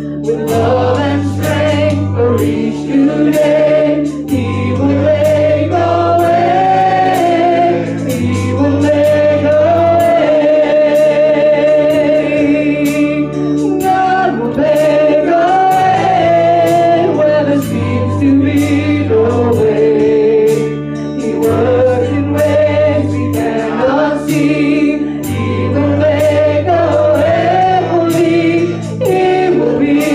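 Gospel song with a choir singing over a bass line and a steady beat.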